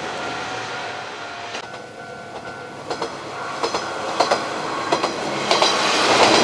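Kanto Railway Joso Line diesel railcar running along the track, its wheels clicking over the rail joints. The clicks come irregularly from about halfway through and grow louder toward the end.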